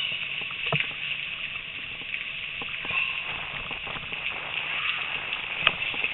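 Bicycle rolling along a trail behind a team of running dogs in harness: a steady hiss with scattered clicks and knocks, the loudest knock near the end.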